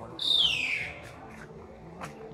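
A bird call: one loud whistled note sliding down in pitch, lasting under a second, shortly after the start.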